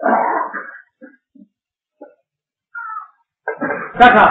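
A dog giving a brief call at the start and a short, thin whine near three seconds in.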